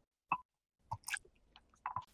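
A few faint, short taps and clicks in three small groups about a second apart: diced raw potato being handled in a glass bowl.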